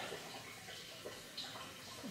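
Faint steady background noise in a pause between words, with no distinct sound event.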